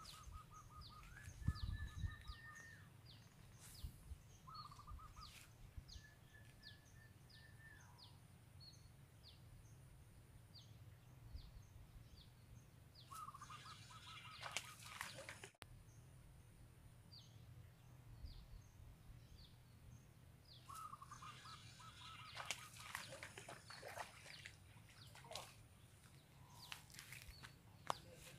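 Faint wild birdsong: rapid short high chirps repeating throughout, with a lower two-note call that recurs several times. A few brief rustles or clatters come around the middle and later on.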